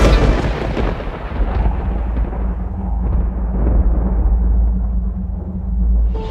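Thunder-style sound effect: a sudden loud crash at the start that dies away into a long, deep rumble, over a low steady drone.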